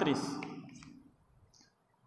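A man's voice trails off, followed by a few faint clicks, then near silence.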